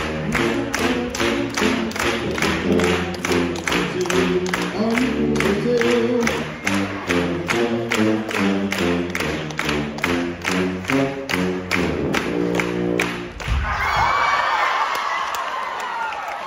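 Dance music with a steady fast beat, about three beats a second, over a stepping low bass line; it stops short near the end with a thud, and the audience breaks into cheering and applause.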